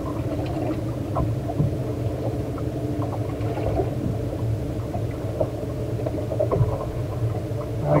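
The boat's V6 outboard engine idling with a steady low hum, with a few light clicks over it.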